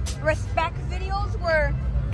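People talking, with a steady low rumble underneath.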